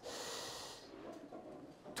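A person's short, noisy breath in, lasting just under a second, followed by faint room noise.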